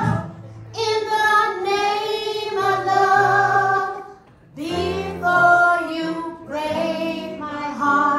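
Several women singing a pop song together live, over low sustained backing notes, in sung phrases with a short break about four seconds in.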